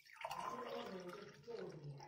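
Milk pouring in a steady stream from a cup into a glass tumbler as the glass fills.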